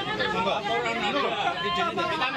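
Several people talking at once in overlapping voices, an agitated group argument.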